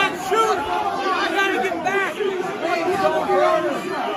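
A crowd of many people talking over one another at once, voices overlapping throughout with no single speaker standing out.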